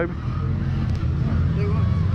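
Side-by-side UTV engines running, a steady low rumble.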